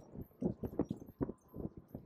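Irregular light knocks and rattles of a bicycle rolling along a paved path, about four a second, with a faint high ticking repeating about three times a second.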